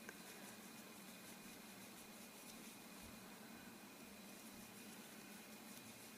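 Near silence: steady room tone with a faint hiss and hum, and one faint click near the start.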